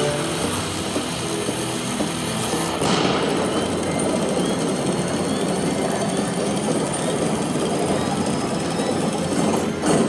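Lock it Link Eureka slot machine's dynamite-explosion sound effect: a long, noisy rumble that starts abruptly, with a louder blast about three seconds in. The blast marks the dynamite symbol going off to reveal a bonus value in the Lock it feature.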